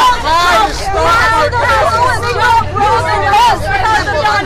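Several people talking loudly over one another in a heated argument, their voices overlapping so that no single line of speech stands out.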